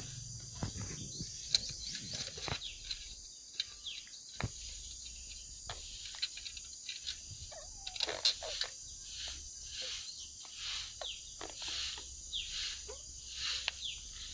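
Light, irregular metallic clicks and clinks of steel tiller tines, brackets and bolts being handled and fitted onto a tine hub, over a steady high chirring of insects.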